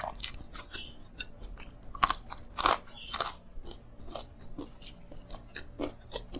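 A person chewing and crunching food close to a clip-on microphone: a run of sharp clicks and crackles, loudest about two to three seconds in.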